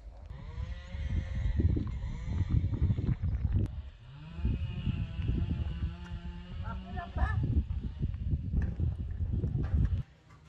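Heavy, uneven low rumble of a microphone being carried by someone walking outdoors, with footsteps and faint voices in the background.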